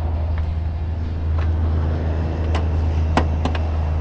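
A 3.5-litre EcoBoost V6 in a 2018 Ford F-150 idling, a steady low hum, with a few light clicks over it.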